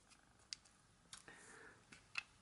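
Near silence with faint handling sounds: a small click about half a second in, then a soft rustle and a light tick as a perfume case is worked out of a clear plastic box.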